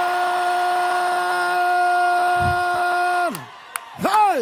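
A voice holds one long, steady note, then slides down in pitch and breaks off about three seconds in.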